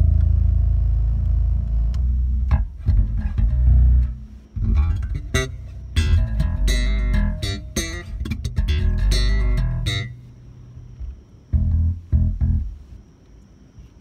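MTD electric bass fitted with new Ernie Ball Cobalt strings, played through a Jeep's car audio system. A low note on the B string rings for about two seconds, then comes a run of plucked notes with a bright, piano-like tone. The notes thin to a few sparse, quieter ones near the end.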